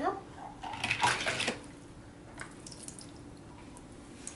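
Water splashing and dripping in a small plastic toy car-wash basin about a second in as a die-cast toy car is moved through it, followed by a few faint plastic clicks.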